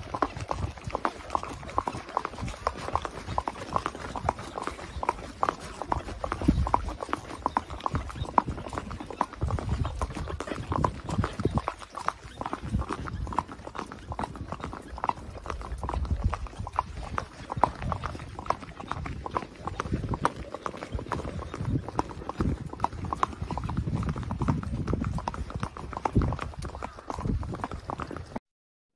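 Horse's hooves clip-clopping at a walk on a packed dirt track, a steady run of hoof strikes heard from the saddle.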